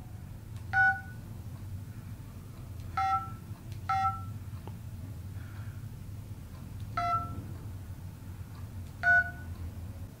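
Touch-tone keypad tones from a telephone handset as a number is keyed in slowly by hand: five short two-note beeps, unevenly spaced one to three seconds apart.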